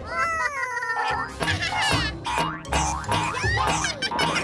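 Cartoon soundtrack: background music with a beat, over which a high, gliding character vocalization rises and falls for about the first second, followed by shorter high glides later.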